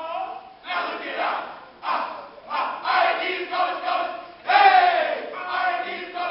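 A group of men shouting a chant in unison, a series of loud calls about a second apart, the loudest coming late. Crowd noise runs under the calls.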